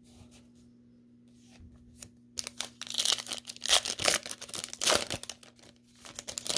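Foil trading-card pack wrapper being torn open and crinkled by hand: a dense run of sharp crackling that starts about two and a half seconds in and lasts about three seconds, after faint handling ticks.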